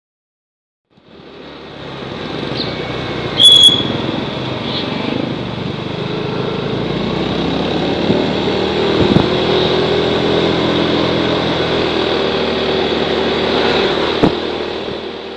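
Motorcycle being ridden in street traffic, its small engine running steadily under road and wind noise, fading in about a second in. A brief, sharp high-pitched sound about three and a half seconds in is the loudest moment.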